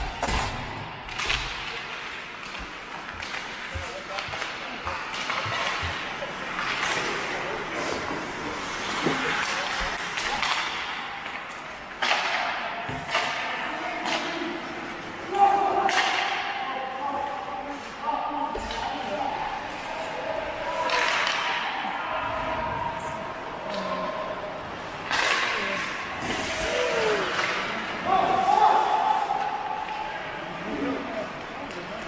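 Ice hockey play in an indoor rink: sticks and puck clacking and knocking against the ice and boards, skates scraping, with indistinct shouts from players, all echoing in the rink.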